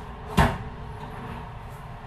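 A single short rattling knock about half a second in: a sliding glass window pane jolting in its frame as it is scrubbed with a cloth.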